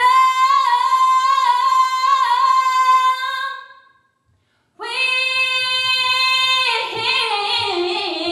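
A young woman singing solo a cappella. She holds a long note that fades away about four seconds in, then after a brief silence comes back with another long sustained note and moves on through several notes.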